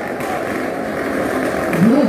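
Motorcycle engines running inside a steel-mesh globe of death, with a rise in pitch near the end.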